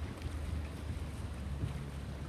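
A boat under way on a canal: steady low rumble of its engine, with wind buffeting the microphone.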